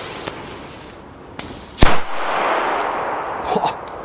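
A Zena Match Cracker, a small friction-head black-powder firecracker (1.2 g, F2 class), goes off with a single sharp bang a little under two seconds in. The bang is extremely loud for its size and is followed by about a second of echo dying away.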